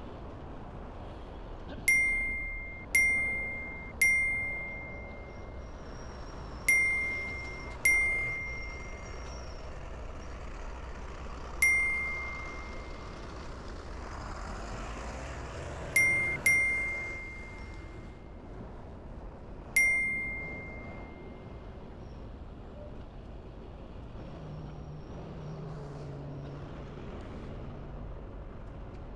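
A bright ding sound effect, struck nine times at irregular intervals, each ringing and fading over about a second. Each ding marks one more vehicle on the running car count. Under it runs a steady wash of street traffic noise.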